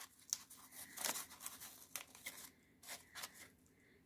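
Faint crackling and rustling of dry moss and paper flowers as fingers push the moss into a paper cone: a scatter of small, irregular crinkles and clicks.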